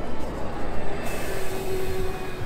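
City bus driving past close by on cobblestones, its engine and tyres rumbling; a hiss comes in suddenly about a second in.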